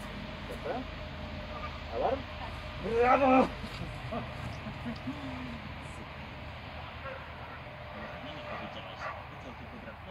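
A dog barking or yipping briefly, twice: a short call about two seconds in and a louder, longer one about a second later.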